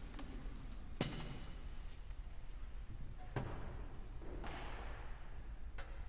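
Handheld microphone being set into its stand clip, picked up by the microphone itself as a sharp thump about a second in, followed by a couple of fainter knocks and a brief rustle over a low steady hum.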